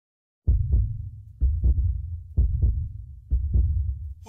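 Heartbeat, four low double thumps (lub-dub) about a second apart, starting half a second in.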